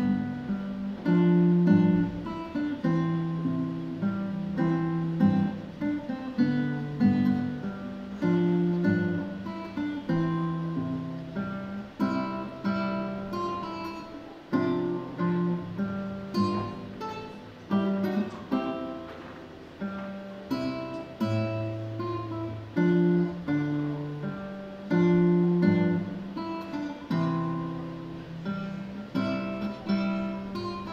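Solo classical guitar played with the fingers: a melody over a moving bass line, each plucked note ringing and fading.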